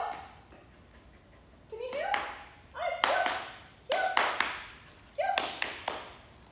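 Pomsky dog barking in four short, sharp bursts about a second apart, each starting with a rising yelp.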